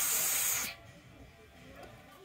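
Helium hissing out of a tank's balloon-inflator nozzle into a latex balloon, cutting off suddenly less than a second in as the flow stops.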